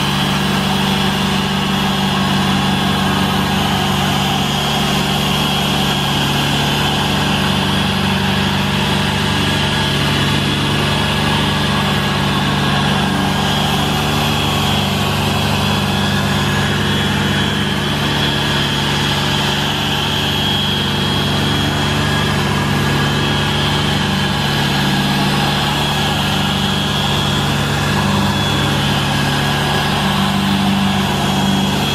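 Portable generator engine running steadily, mixed with the motor of a Harbor Freight dual-action polisher buffing car paint through an orange foam pad. The sound stays steady, with a low engine drone and a thin high whine.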